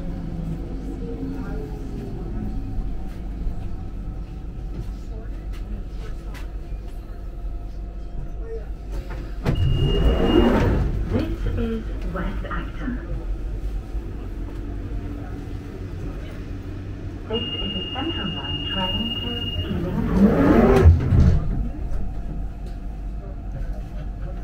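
London Underground Central line train (1992 stock) slowing to a stop, its motor whine falling, under a steady low rumble. About ten seconds in, the sliding doors open with a short high beep; later a steady high warning tone sounds for about two seconds before the doors close, the loudest moment.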